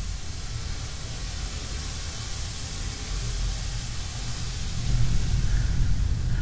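Steady hissing noise over a low rumble, the rumble growing louder about five seconds in.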